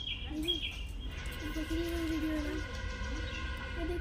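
An animal's long, wavering call, held for over a second.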